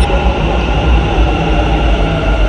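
Bengaluru metro train running past the platform: a steady, loud rumble with a whine riding over it.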